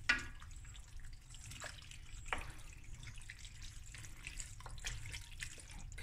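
Wooden spoon stirring elbow macaroni in a thick cream-and-cheese sauce in a stainless steel pot: soft wet squelching with scattered clicks of the spoon against the pot, over a low steady hum.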